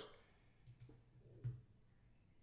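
Near silence, broken by two faint computer mouse clicks; the second, a little louder, comes about a second and a half in.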